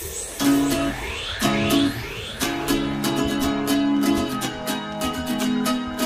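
Background music with a quick, steady beat, coming in fully about half a second in.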